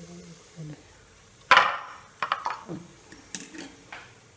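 Aluminium steamer pot and its plates clattering as the steamed idiyappam is handled: one loud clang about a second and a half in, then a few lighter clinks.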